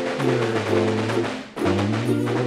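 Instrumental music: a Lambeg drum beaten with canes in rapid strokes over a ukulele tune with held bass notes. The music breaks off for a moment about one and a half seconds in, then resumes.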